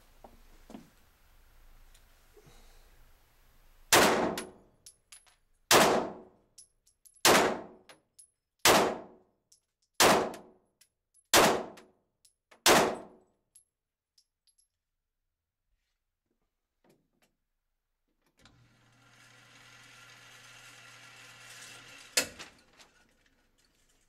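Seven pistol shots from a Glock fitted with a Lone Wolf 3.5 lb trigger connector, fired at an even pace about 1.4 seconds apart, each echoing off the concrete walls of an indoor range. Later, for a few seconds, a motorized target carrier whirs as it runs the target back, ending in a click.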